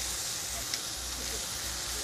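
New York strip steaks searing in a hot pan: a steady sizzle with a few faint crackles.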